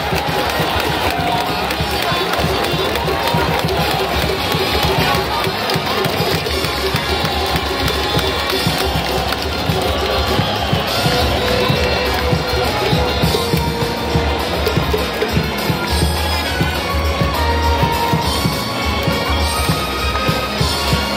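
Music playing in a packed baseball stadium over the steady noise of the crowd, with held notes that change every few seconds.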